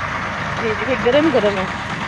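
A steady, low, engine-like rumble runs throughout, with a brief voice over it in the middle.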